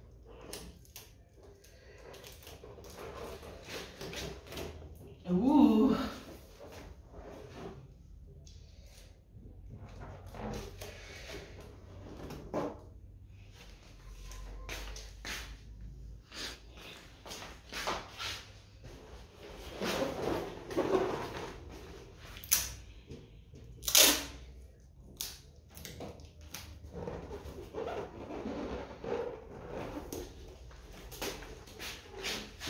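Scattered rustles, clicks and knocks of hands handling a latex balloon and sticky tape while fixing the balloon to a wall. A short, louder pitched sound comes about five seconds in, and a sharp click about three-quarters of the way through.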